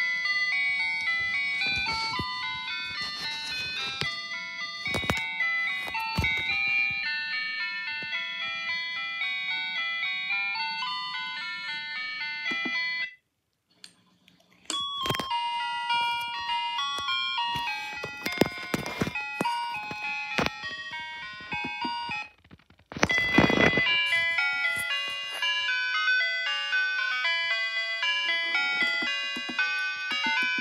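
Electronic ice cream truck chime tunes from a Kilcar digital music box, played through a small karaoke speaker. One tune cuts off about 13 seconds in, and after a brief silence another begins. It breaks off near 23 seconds and a third tune follows.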